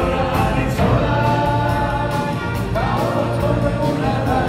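Live dance band playing a song with drums, electric guitars, saxophone and trumpets, loud and steady with held chords.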